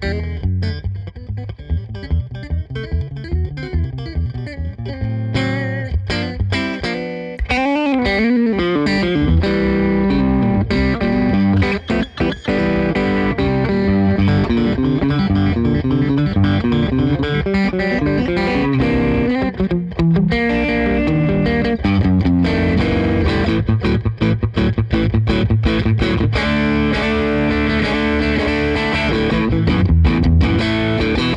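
Fender Custom Shop 1962 Telecaster Custom electric guitar on its middle pickup position (neck and bridge pickups together), played amplified. It opens with short, choppy phrases, has wide string bends with vibrato about eight seconds in, then settles into dense, sustained lead lines.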